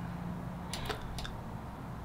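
Quiet room tone with a faint steady hum, and a few soft computer mouse clicks a little under a second in.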